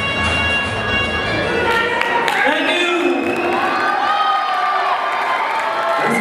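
A live band's song ends on a held chord about two seconds in, and the audience cheers and shouts.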